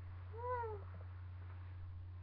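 A domestic cat meowing once, a short call that rises then falls in pitch, over a steady low electrical hum.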